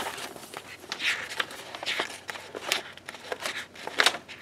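Sheets of sticker paper being handled and a page turned in a discbound book: a string of short paper rustles and soft taps.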